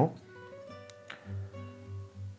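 Quiet background music of plucked acoustic guitar notes, held and changing every half second or so, with a single light click a little under a second in.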